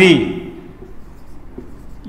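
Marker writing on a whiteboard: faint strokes of the tip across the board.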